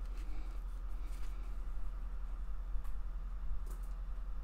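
Steady low electrical hum, with a few faint rustles and taps as a LaserDisc jacket is handled and set aside.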